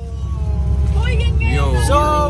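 Steady low rumble of a bus's engine and road noise heard inside the passenger cabin, with people's voices starting about a second in.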